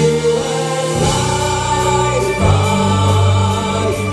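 Male vocal group singing together over a live band's accompaniment. Sustained sung notes sit over a steady bass line that moves to a new note about one second in and again about two and a half seconds in.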